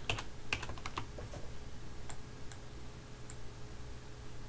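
Computer keyboard and mouse clicks: a quick cluster of keystrokes in the first second, then a few single clicks spaced apart, over a faint steady hum.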